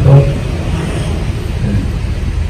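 A steady low rumble in a pause between phrases of a man's amplified speech.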